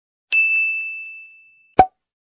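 Notification-bell 'ding' sound effect: one high bell tone struck once and fading away over about a second and a half. A short, sharp click follows near the end.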